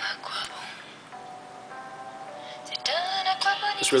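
A quiet song with singing, played through the small built-in speaker of an Ainol Novo 7 Fire tablet. It is faint at first; about three seconds in a voice slides up into a held note and the music gets louder.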